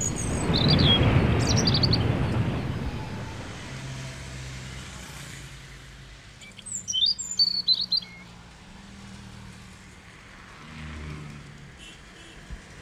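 Small birds chirping in short high calls, a few near the start and a quick flurry about seven seconds in, over a faint steady hum. At the start a loud rush of noise swells and fades over about three seconds.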